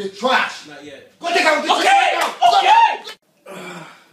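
A hand slap against a person, amid loud wordless shouting.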